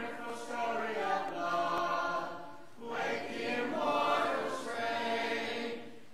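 Congregation singing a hymn a cappella, many voices together holding long notes, with a short break between lines a little before halfway through.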